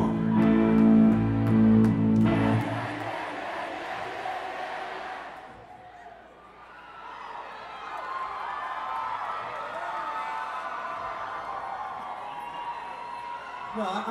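A live rock band holds a chord that cuts off about two and a half seconds in. An audience then cheers and shouts, dies down briefly, and rises again.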